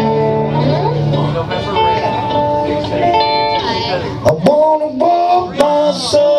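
Live band playing a song's instrumental intro on electric guitars, bass and mandolin, with held and sliding notes and two sharp hits about four and five and a half seconds in.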